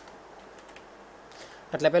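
Faint typing on a computer keyboard, a few soft keystrokes, before the voice comes back in near the end.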